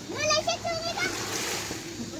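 Sea water splashing and lapping around people wading in it, with a child's high voice calling out briefly in the first second.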